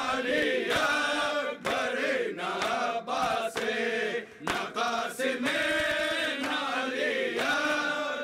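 Men's voices chanting a noha, an Urdu Shia mourning lament, the melody rising and falling in long drawn-out notes with short breaks between lines.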